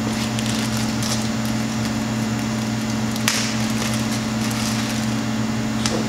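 Hands working plastic zip ties and wiring on the back of a headlight housing: scattered light clicks and rustles, with one sharp click a little past three seconds in. A steady low hum runs underneath.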